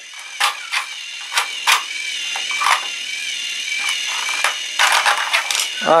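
Plastic toy clicks and clatter from a Fisher-Price TrackMaster logging mill being worked by hand to drop a log, scattered sharp clicks with a quick run of them near the end. Under them runs the steady thin whine of a small battery-powered toy train motor.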